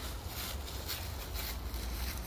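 Quiet outdoor background: a steady low rumble with a faint, even hiss and no distinct sound event.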